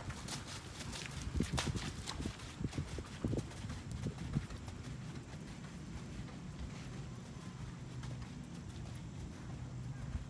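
Hoofbeats of a pinto horse on sand arena footing, a run of dull thuds that is clearest in the first four to five seconds and then fainter.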